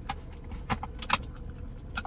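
Close-up chewing of a crusty bánh mì sandwich: a few short, crisp crunches over a low steady hum.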